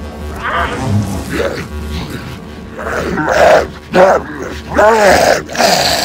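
An animated character makes short wordless vocal noises over a low, steady music bed. The noises are mostly in the second half, and one of them has a wavering pitch near the end.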